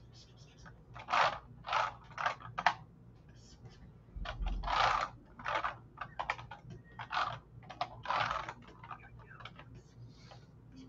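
Digital pen scratching across a drawing tablet's surface in a quick, irregular run of short sketching strokes, with a low bump about four seconds in.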